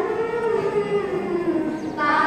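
Girls' voices singing one long held note that slides slowly lower in pitch, the opening of a Telugu song.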